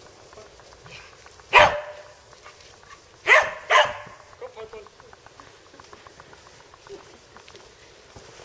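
Border collie barking: a single bark about one and a half seconds in, then two quick barks just past the three-second mark.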